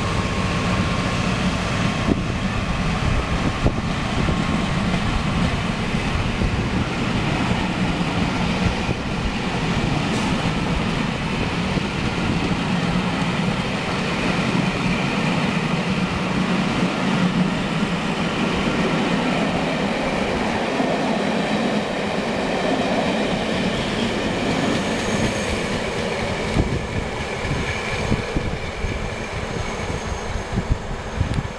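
Passenger coaches of a charter train passing at speed close by, with a steady rolling noise from the wheels on the rails.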